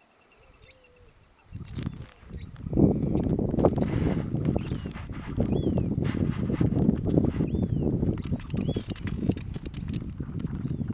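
Lionesses feeding on a wildebeest carcass: a loud, rough, low growling with crackles of tearing and chewing, starting about a second and a half in and holding from about three seconds on. Small birds chirp over it.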